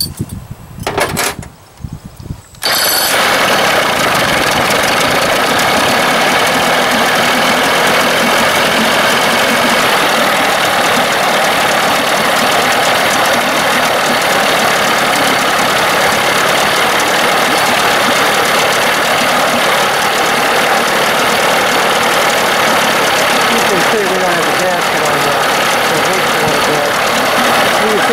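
Evinrude 25 two-stroke outboard motor being started, catching about two and a half seconds in after a few brief cranking sounds, then running steadily at idle. It runs with its thermostat removed, on a test of its cooling-water flow.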